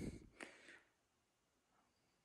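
Near silence: a man's brief hesitant "uh" trails off in the first half second, then nothing is heard.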